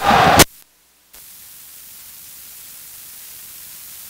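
A brief loud noisy burst that ends in a sharp click, a moment of silence, then a steady hiss of electronic static, stronger in the treble.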